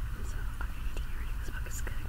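A woman whispering close to the microphone over a steady low hum.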